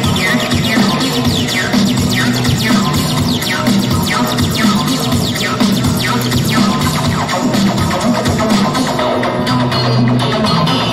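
Electronic music played loud and steady: a sustained bass line under falling synth sweeps that repeat about every two-thirds of a second.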